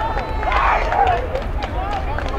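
Several voices on a football pitch shouting and cheering after a goal, with a short burst of louder cheering about half a second in, over a steady low rumble.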